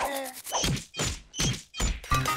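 Cartoon sound effects: four dull thunks about half a second apart, some followed by a brief high ding.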